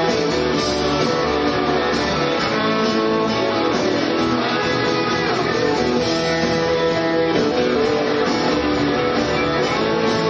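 Live rock band playing, electric guitars to the fore over a steady bass line and drums.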